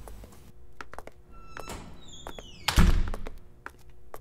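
Film sound design over faint background music: scattered light clicks, a falling swish about two seconds in, then a heavy thud just before the three-second mark.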